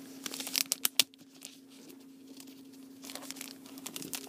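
Plastic comic book bag crinkling as its taped flap is peeled open, with a quick run of sharp crackles in the first second, a quieter stretch, and more rustling near the end.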